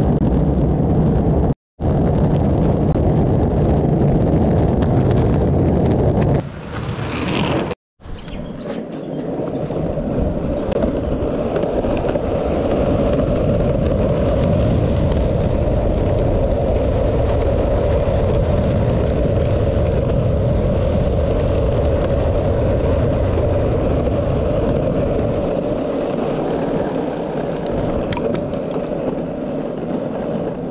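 Skateboard wheels rolling on rough asphalt, a steady loud roar, with wind on the microphone. The sound drops out briefly twice, near 2 seconds and 8 seconds in.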